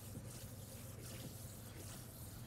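Chalk scraping on a blackboard as long looping strokes are drawn, over a steady low room hum.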